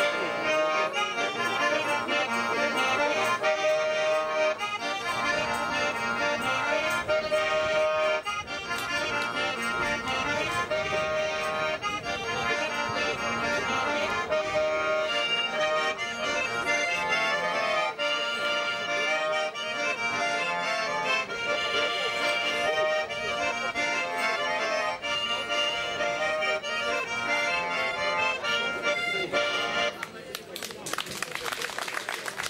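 Solo button accordion (armonika) playing a traditional tune, melody over chords; the playing stops right at the end.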